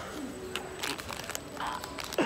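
A person's short, low, muffled vocal sounds, a coo-like hum from behind a plush mask, with a few light clicks and rustles.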